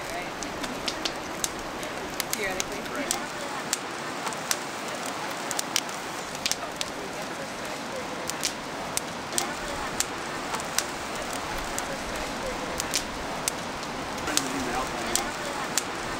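Wood fire crackling: irregular sharp pops, a few each second, over a steady hiss.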